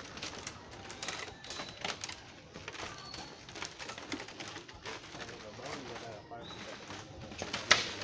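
Footsteps knocking irregularly on a bamboo-slat boardwalk, with a sharper knock near the end. Birds call now and then over low voices in the background.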